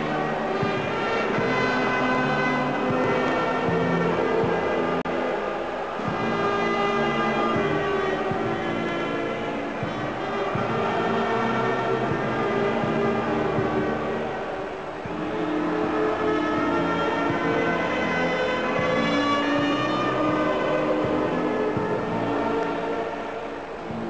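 Brass band playing a national anthem in slow, sustained chords.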